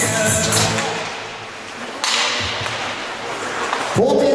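Arena music over the public-address speakers fading out, then from about two seconds in a sudden scraping and clatter of skates and sticks on the ice as play restarts off the faceoff.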